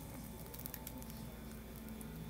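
Faint crackling from a Bugles corn chip catching fire and burning under a butane lighter flame, scattered small ticks over a steady low hum.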